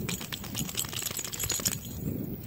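Wet long-haired dachshund shaking water off her coat after a swim, with a rapid jingling of the metal tag on her collar that stops shortly before the end.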